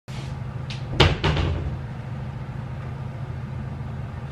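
A short run of sharp knocks about a second in, one light tap, then the loudest clunk and a last knock just after, over a steady low hum.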